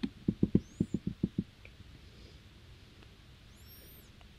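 A quick run of about eight soft, low clicks in the first second and a half, from working at the computer, then faint room tone. Two faint high chirps come once early and once near the end.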